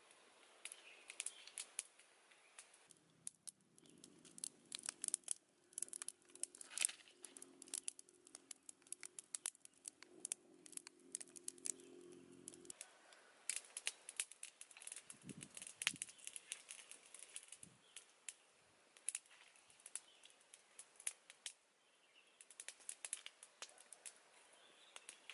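Small wood fire crackling in irregular sharp snaps, mixed with the rustle of leaves being handled. A faint steady low hum runs underneath from a few seconds in until about halfway through.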